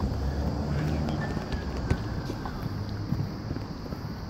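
Wind rumbling on the microphone over general outdoor city background noise.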